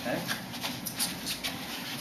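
Soft scuffs and rustles of martial-arts uniforms and bare feet on carpet as a person gets up off the floor and steps into place, a few brief scuffs.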